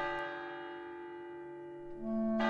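A church bell struck once, ringing with many overtones and slowly fading. A fresh strike sounds right at the end.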